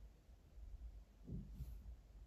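Near silence: quiet room tone, with one faint, soft low bump about one and a half seconds in.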